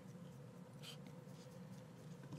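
Near silence with faint room hum and the soft scratching of a small paintbrush dragged over a textured miniature's fur while overbrushing.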